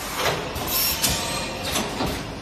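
Automatic plastic ampoule forming, filling and sealing machine running, with short bursts of hiss and a few sharp clacks as its stations cycle.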